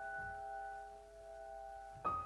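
Piano notes from a slow, quiet phrase ringing on together under the sustain pedal and slowly dying away. A new note is struck right at the end.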